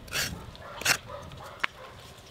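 A coconut half scraped against the serrated grater blade of a bonti, giving two short scratchy strokes about 0.7 s apart as fresh coconut is grated. A fainter wavering whine follows in the middle.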